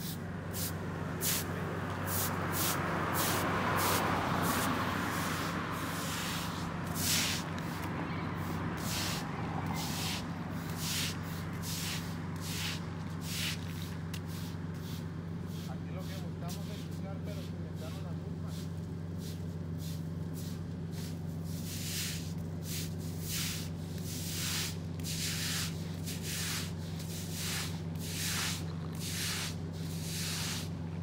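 Night street ambience: a steady low hum, with a vehicle passing a few seconds in, swelling and fading. Short hissing rustles keep cropping up, more of them near the end.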